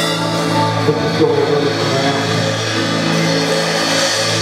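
Live band music with long, steady held chords.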